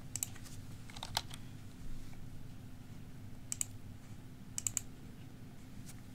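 Scattered short, sharp computer clicks, some in quick pairs, as a tag is browsed for and selected in a software dialog, over a faint steady low hum.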